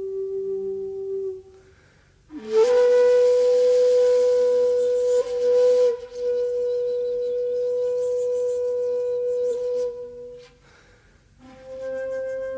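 Solo shakuhachi playing slow, long held notes: a low note fades out, then after a short breath pause a higher note enters with a strong, breathy attack and is held for several seconds. After a second pause a slightly higher note begins near the end.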